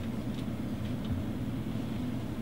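Room tone: a steady low rumble with a couple of faint ticks.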